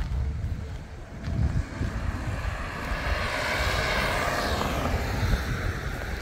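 A vehicle passing close by: its noise swells from about two seconds in, peaks near the fourth second and fades away again.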